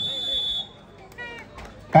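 A referee's whistle blown once: a single steady, high-pitched blast of about two-thirds of a second, signalling a timeout. A brief rising call follows a little over a second in.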